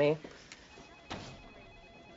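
An electronic office telephone ringing faintly in the background, a thin high warbling tone, with a single soft knock about a second in.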